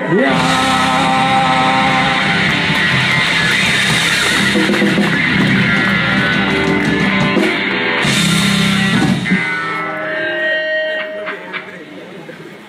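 Oi! punk band playing live on distorted electric guitars, bass and drums, holding a loud ringing chord over cymbals that stops about nine and a half seconds in; a few quieter stray guitar notes follow.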